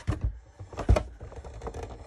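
Hand-cranked Sizzix embossing machine turning, its plates and embossing folder passing through the rollers with a few irregular knocks and clunks, the loudest about a second in.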